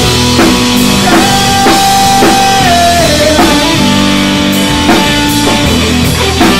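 Instrumental passage of rock music: guitars over a steady drum-kit beat. A held lead note slides downward in pitch about halfway through.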